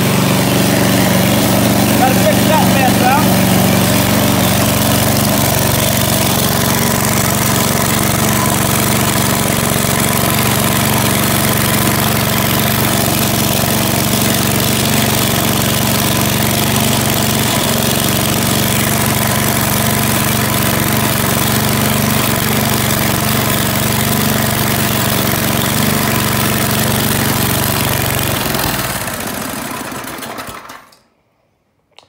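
Tecumseh single-cylinder engine on a log splitter running steadily, back in running order after more than 12 years unused, with its carburetor cleaned. The sound fades away near the end.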